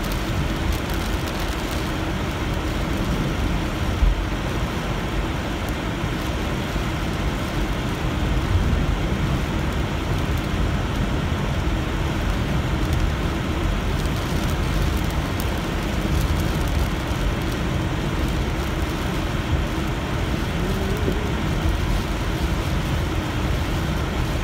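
Steady road noise inside a moving car: tyres hissing on a rain-soaked, water-covered road, with rain on the car, and one short knock about four seconds in.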